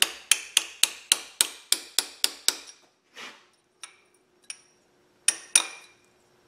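Light hammer taps on a punch, bending the lock-plate tabs over the camshaft gear bolts so the bolts can't back loose. A quick even run of about ten taps, a pause with a few faint touches, then two more taps near the end with a short metallic ring.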